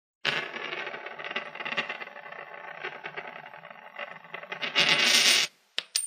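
A coin spinning and rattling on a hard surface. It grows louder about five seconds in, then gives two sharp clicks as it begins to settle.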